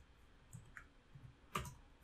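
Faint computer keyboard keystrokes: a few scattered clicks, with one sharper click about one and a half seconds in.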